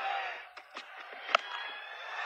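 Faint stadium ambience from a cricket broadcast with a few light clicks. One sharp click comes just over a second in.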